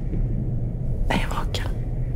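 A short whispered line of speech about a second in, over a low steady drone.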